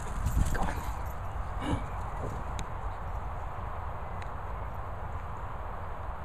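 Steady wind rumble on an outdoor handheld microphone, with a few louder handling bumps in the first second or so as the camera swings over the grass.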